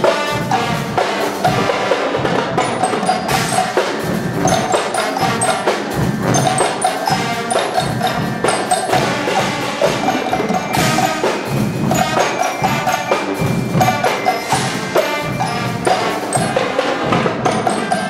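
Guggenmusik carnival band playing live: massed brass, trumpets, trombones and sousaphones, over a driving beat of snare drums, bass drums and cymbals.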